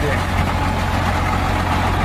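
Caterpillar 966C wheel loader's diesel engine idling steadily.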